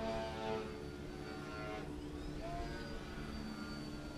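Electric motor and propeller of a small RC biplane whining steadily in flight. The pitch dips and then climbs again about halfway through as the throttle changes.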